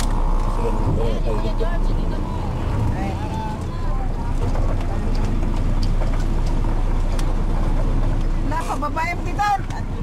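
Vehicle engine and road noise heard from inside the cab while driving, a steady low rumble, with snatches of talk over it.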